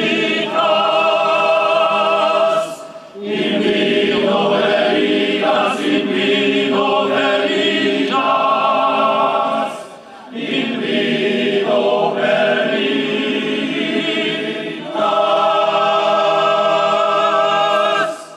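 Men's choir singing a cappella, sustained chords in phrases broken by short breaths about three and ten seconds in.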